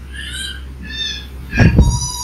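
Three short, high-pitched animal calls, one after another, with a brief loud low thump just before the last one.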